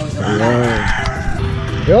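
A rooster crowing once, one long crow of about a second and a half.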